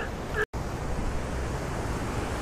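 Steady wind noise on the microphone over the wash of shallow surf on a tidal flat, with a brief full dropout about half a second in.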